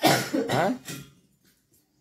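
A person coughing: a short bout of harsh coughs starting suddenly and lasting about a second.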